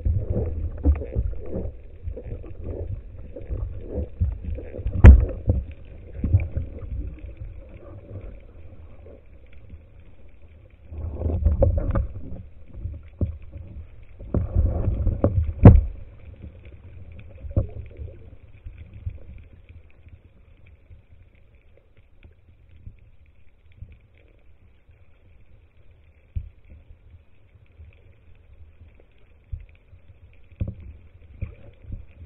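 Muffled water movement and handling noise inside an underwater camera housing mounted on a speargun, a low rumble with sharp knocks about five seconds in and again near the middle. Two louder rushes of water come around the middle, then the sound drops low and sparse.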